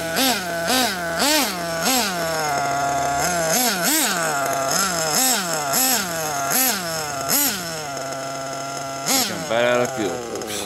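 RB Fire-11 nitro engine in a D8 buggy, new and being broken in, blipped on the throttle a little under twice a second. Each blip rises in pitch and drops back to idle. It idles steadily for short stretches around three seconds in and near eight seconds, and gives one sharper, higher rev near the end.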